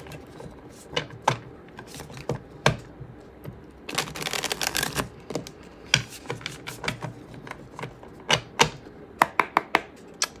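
A tarot deck being handled and shuffled by hand: scattered sharp clicks and taps of the cards, with a quick dense run of shuffling about four seconds in.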